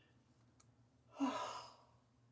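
A woman sighing: one long breathy exhale about a second in, with a short "ow".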